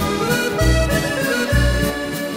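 A French waltz played on the accordion voice of a Yamaha Tyros 4 arranger keyboard, with a low bass note sounding about once a second under the melody.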